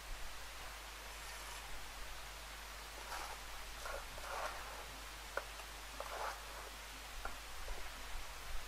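Faint scrapes of a mason's trowel working cement mortar in a plastic mortar tub, with a few light clicks of the trowel.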